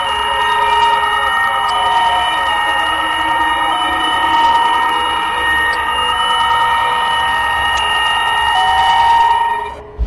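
Background music: a sustained, high synthesizer drone of several held tones, ending abruptly near the end.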